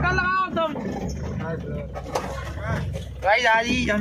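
A vehicle engine idling with a steady low hum, heard from inside the cab.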